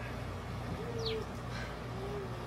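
Backyard hens giving soft, low held calls: one short note a little under a second in and another near the end, with a quick high falling chirp about a second in, over a steady low hum.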